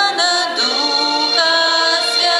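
A woman singing a slow worship song into a microphone, holding long notes with vibrato, with little or no instrumental accompaniment.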